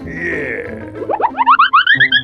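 Cartoon sound effects over background music: a short whoosh at the start, then from about a second in a quick run of short notes climbing steadily in pitch.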